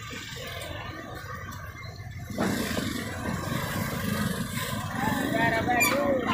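Market background noise with voices in the distance; the noise steps up and grows louder a little over two seconds in, and voices come through more clearly near the end.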